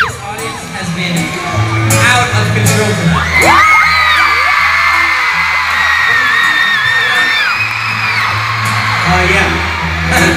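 Live pop-rock band playing through an arena PA, heard from the audience, with a steady changing bass line. Fans close by let out long, high-pitched screams from about three seconds in until near the end.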